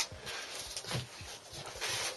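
Cardboard box and crumpled packing paper rustling and scraping as hands shift a large stretched canvas inside it, with a few light knocks.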